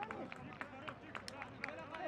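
Men's voices calling out on and around a football pitch, not clear words, with several sharp claps or knocks scattered through.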